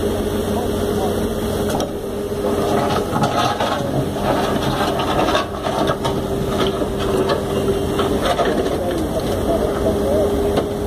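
Komatsu WB93R backhoe loader's diesel engine running steadily under a constant whine, as its bucket works in a muddy canal. Short knocks and scrapes come a few seconds in, around the middle.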